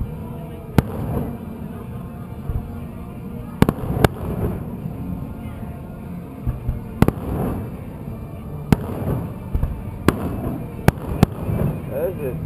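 Aerial fireworks shells bursting: a string of sharp bangs, about eight in twelve seconds and irregularly spaced, over a continuous low rumble.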